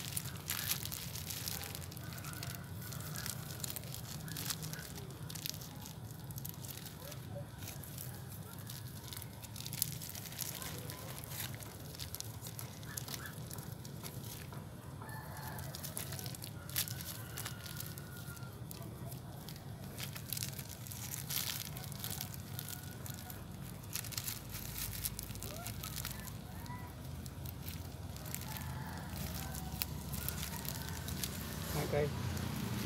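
Clear plastic bag crinkling and rustling in short, irregular bursts as it is wrapped and tied around the cut end of a desert rose cutting. Faint bird calls sound in the background at times.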